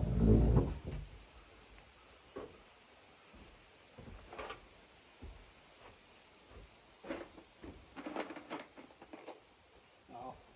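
A metal patio chair scraping across wooden deck boards in the first second, then scattered knocks and footsteps on the wooden porch.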